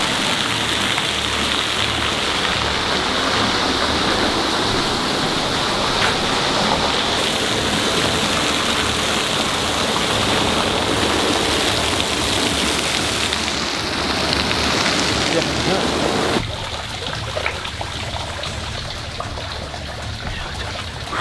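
Artificial waterfall pouring into a stone-edged pond, a steady rushing splash that cuts off suddenly near the end.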